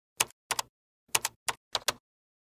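Keyboard-typing sound effect: about eight short, separate key clicks, unevenly spaced, with dead silence between them.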